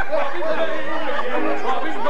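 Many voices at once, talking and calling out over each other, with an accordion playing underneath and a few held notes.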